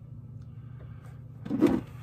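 Steady low hum in a small room, with one short, louder noise about one and a half seconds in.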